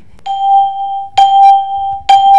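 Two long electronic beeps, back to back, each a steady single tone of a bit under a second with a sudden start: a debate timer buzzer signalling that the speaker's time is up.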